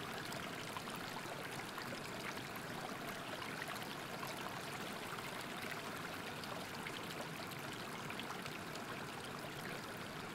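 Steady, soft rushing of flowing water, like a stream or small waterfall, with no breaks or changes.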